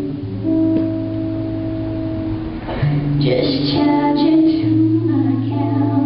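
Live performance of a song: a guitar plays held chords, and about three seconds in a woman starts singing over it.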